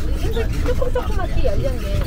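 A person talking over the steady low rumble of a moving tour vehicle's engine.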